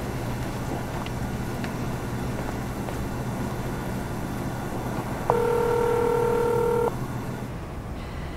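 Steady low hum of machine-shop background noise. About five seconds in, a single electronic telephone ring tone lasting about a second and a half starts and stops abruptly.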